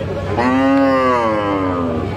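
A cow moos once: one long call starting about half a second in, its pitch rising slightly and then easing down.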